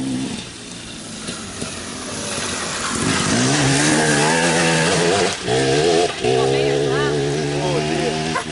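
Enduro motorcycle engine coming up loud as the bike ploughs through a deep water splash about four seconds in, with the rush of sprayed water. The engine then holds a steady note that breaks off briefly twice.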